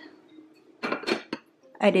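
Glass lid set down onto a white baking dish, clinking a few times against the rim about a second in.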